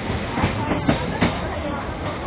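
Electric suburban local train running, heard from inside a crowded compartment: a steady rumble with three sharp knocks in quick succession, under women passengers' chatter.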